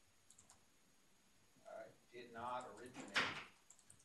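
Faint clicks of typing on a computer keyboard, then a few quiet spoken words and a short, sharp burst of noise about three seconds in.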